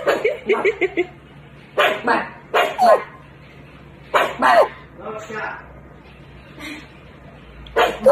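Small black puppy barking in short, high yips, about six of them at irregular gaps, several dropping in pitch at the end.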